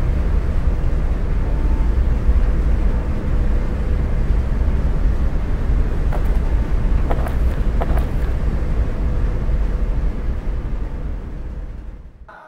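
Steady low rumble of city ambience, like distant traffic, with a few faint clicks in the middle, fading out near the end.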